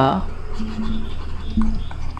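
A stylus scratching on a drawing tablet as a word is handwritten onto the slide.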